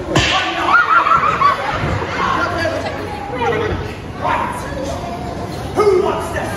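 Actors' voices carried over a sound system in a large echoing tent, with a sharp crack at the very start, and a wavering, sing-song voice about a second in.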